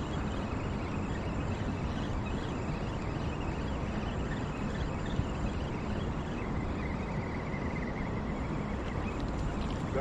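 Steady outdoor background noise with no distinct event, and a faint thin high tone for a few seconds in the second half.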